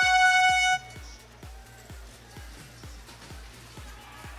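A loud held chord of horn-like tones from the competition field's sound system cuts off about a second in; it is the warning cue marking 30 seconds left in the robot match. After it, quieter background music with a steady beat plays on.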